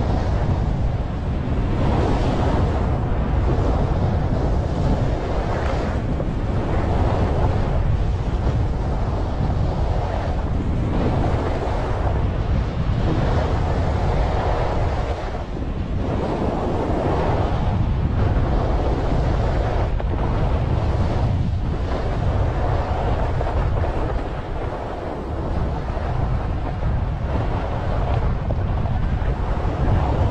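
Wind buffeting the camera microphone of a skier running down a groomed slope, with the skis' edges scraping over packed snow in swells about every one and a half to two seconds, one per turn.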